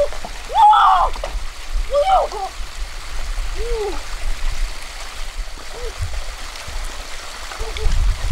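Small waterfall and stream running steadily, with a woman's short high-pitched exclamations about five times, the loudest about a second in.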